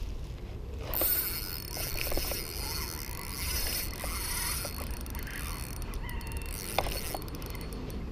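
Spinning reel being cranked steadily, winding in line on a freshly hooked fish, with small mechanical ticks from the reel.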